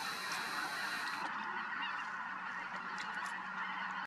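A huge flock of geese, mostly snow geese, calling all at once in flight: a dense, steady chorus of many overlapping calls with no gaps.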